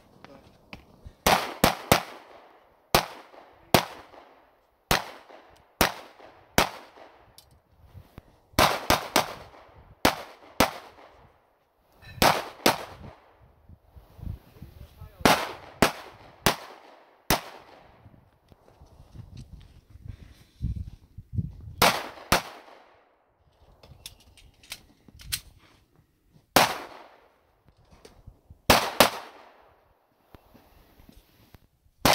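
Pistol fire on a shooting course: about thirty shots over the span, some single and some in quick bursts of two to four, with each report trailing off in an echo. The gaps of a second or two between strings are where the shooter moves between positions.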